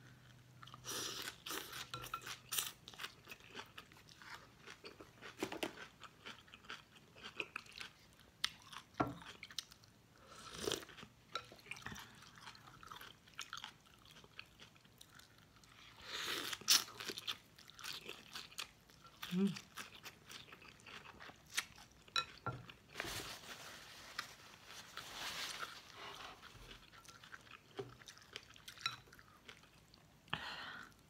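Close-miked eating of pho: wet chewing with crisp crunches from bean sprouts and greens, in irregular bursts, and longer slurps of rice noodles about halfway through and again later on.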